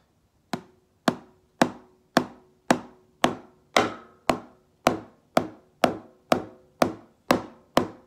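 Wooden drumsticks striking a practice pad in single strokes, about two a second at an even, steady tempo, with no metronome. This is the 'eight on a hand' exercise: eight strokes with one hand, then the other hand takes over. The first stroke is a little softer than the rest.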